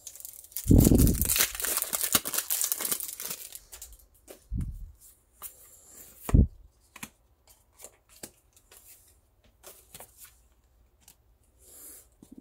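Foil wrapper of a Pokémon trading card booster pack being torn open, with a crinkling burst lasting about three seconds. After it come two soft knocks and light clicks as the cards are handled and flipped through.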